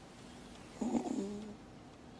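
A woman's short, hesitant murmur, a wordless 'mm', about a second in.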